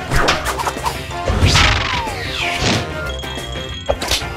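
Cartoon slapstick sound effects over busy background music: a quick run of hits and crashes with falling swishes, the heaviest impact about a second and a half in.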